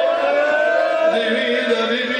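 A man's voice chanting a zakir's recitation into a microphone, drawn out in long held notes that slide slowly in pitch, with a new phrase starting about a second in.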